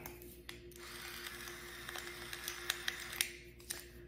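Stainless steel pepper mill grinding peppercorns into a glass jar: a steady gritty grinding sprinkled with small clicks, stopping shortly before the end.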